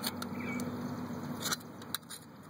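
A few light metallic clicks and scrapes, near the start and again in the last half second, as a thin metal rod is worked around a seized freeze plug in a Chevy 4.3 V6 engine block. A faint low steady hum runs under the first part.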